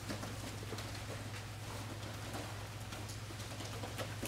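Faint, irregular soft taps and rustles of barefoot taekwondo students moving through a form on foam mats, over a steady low hum.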